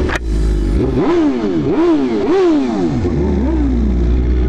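A sport motorcycle engine revved in a run of about five quick blips, its pitch rising and falling each time over a steady idle, after a short knock near the start.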